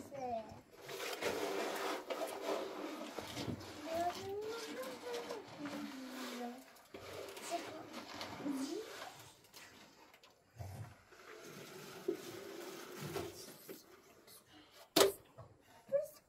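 Soft talk with a child's voice among it, and a single sharp knock near the end.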